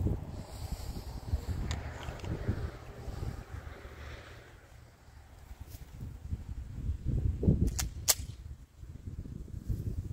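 Gusting wind buffeting the microphone, with a few sharp clicks from a semi-automatic pistol being handled. Two of the clicks come close together about eight seconds in.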